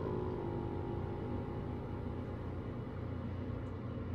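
Steady low rumble of background noise, with a held musical tone dying away within the first second.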